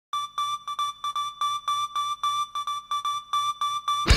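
Synthesizer intro: a single note restruck in an even pulse, about four times a second.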